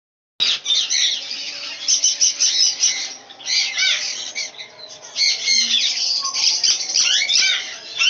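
A colony of Java sparrows chirping and calling, many short overlapping calls at once, with the flutter of wingbeats as birds fly between perches. The calling starts about half a second in and thins briefly in the middle before picking up again.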